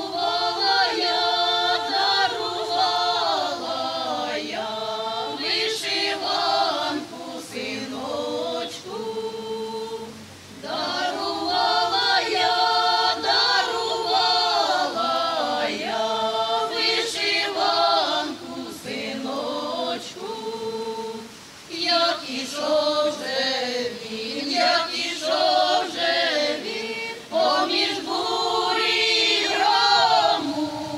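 Women's folk choir singing a Ukrainian folk song unaccompanied, in several voices. The phrases are long, with short breaks about ten and twenty-one seconds in.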